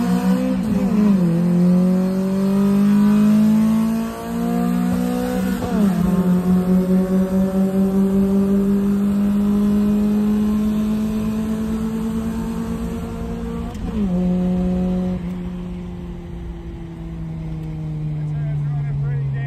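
Honda Prelude engine heard from inside the cabin, accelerating hard through the gears. Its pitch climbs steadily in each gear and drops sharply at upshifts about a second in, about six seconds in and about fourteen seconds in, then sinks slowly as the car eases off.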